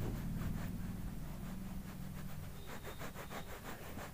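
Stylus scribbling back and forth on a touchscreen, quick scratchy strokes several a second, over a low steady hum.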